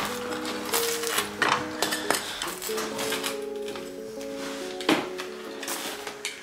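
Background music with held notes, over a handful of short, sharp crunching strokes of a rolling pizza cutter slicing through baked crust onto a wooden peel, the loudest at the very start and about five seconds in.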